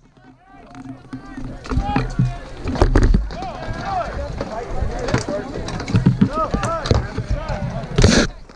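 Battle din from a large armoured melee: many voices shouting and yelling at once, with repeated sharp knocks of rattan weapons striking shields and armour. A loud, sudden thump close by right at the end.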